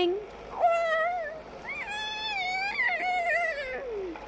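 A child's voice giving two long, high, wavering cries in a character voice, the second lasting about two seconds and falling away at the end.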